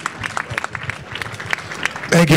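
Audience applauding, many separate hand claps.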